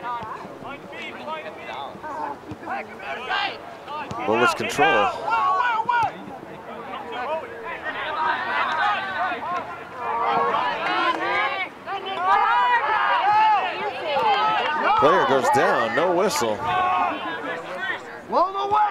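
Voices of several people talking and calling out near the sideline of an outdoor soccer game, loudest and busiest through the middle and latter part.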